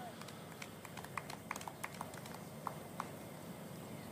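Faint, scattered clapping from a few spectators: a string of irregular single claps rather than full applause.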